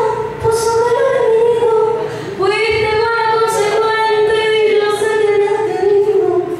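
A woman singing into a microphone in long, held notes, breaking off about two seconds in and starting a new phrase.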